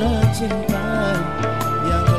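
Live band playing a slow song: a steady drum beat and bass line under keyboard chords, with a melody line that slides between notes.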